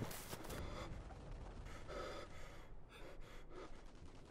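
A wounded man's heavy, pained gasping breaths, a few separate gasps.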